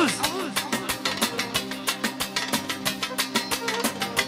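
Live manele band music with a fast, steady beat under sustained instrument tones, a violin among them.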